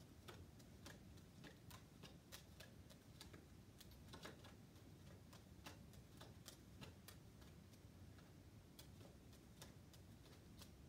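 Playing cards dealt one at a time onto a pile on a wooden stool top: a faint, steady run of soft ticks, about three a second.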